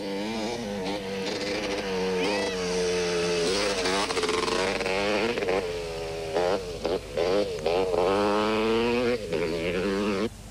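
Off-road motorcycle engine revving hard under load, its note rising and falling with the throttle and dipping briefly several times.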